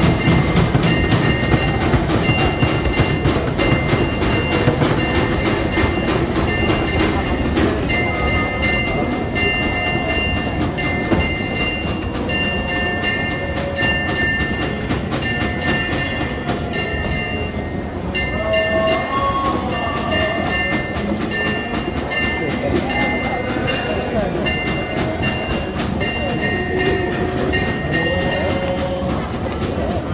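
Church bells struck rapidly and without pause, their ringing tones hanging on between strikes, briefly thinning about halfway through, over a crowd talking.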